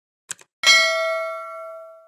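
Subscribe-button animation sound effect: two quick clicks, then a single bell ding that rings on and fades away over about a second and a half.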